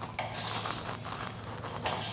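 A bristle brush dabbing soapy leak-test solution onto a propane hose fitting: faint scratchy brushing, with a light click near the start and another near the end.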